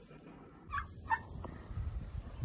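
Two short calls from a domestic turkey, about a third of a second apart near the middle, over a low wind rumble on the microphone.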